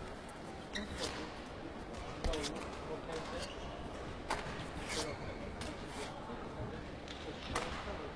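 Sharp, irregular clicks of badminton rackets striking a shuttlecock, about one a second, over the murmur of voices in a large hall.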